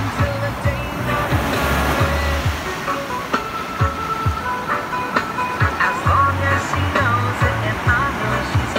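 Background music: the instrumental opening of a song, with a repeating bass line, a steady drum beat and short melodic phrases.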